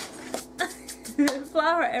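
A woman speaking a few words, with a few short clicks earlier on.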